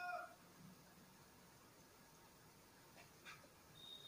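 Near silence: a brief, faint high-pitched animal call right at the start, then room tone with a couple of faint marker taps on the whiteboard about three seconds in.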